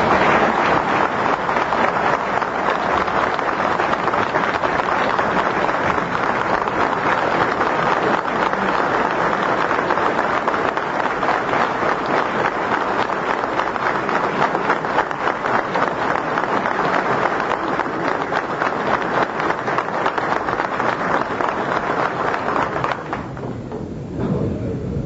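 A large crowd applauding steadily for over twenty seconds, dense clapping that dies away near the end.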